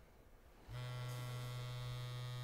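A steady electric buzz with a low hum, starting abruptly under a second in: a bedside device's buzzing alert, waking a sleeper.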